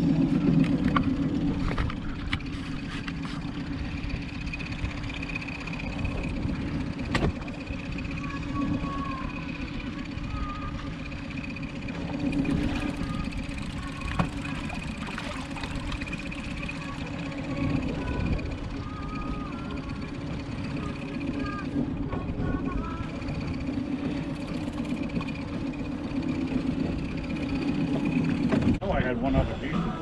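Boat's Mercury outboard motor running steadily, a low even pulsing hum with the boat under way.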